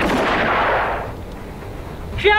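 A sudden blast-like hit followed by a rushing tail that fades away about a second in: an edited boom-and-whoosh transition sound effect.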